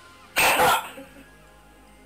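A person makes one short, sharp, cough-like burst of noise about half a second in, a sudden sound made to startle a cat.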